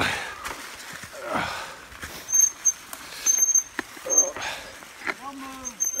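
Fat bike rolling fast down a leaf-covered dirt trail: wind buffeting the microphone in swells, sharp rattles and knocks over bumps, and short high-pitched squeals of the brakes from about two seconds in as the rider slows.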